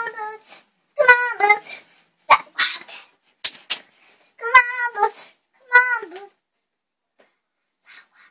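A young girl singing unaccompanied, short high 'oh' phrases with quiet gaps between them, and a few brief hiss-like sounds around the middle.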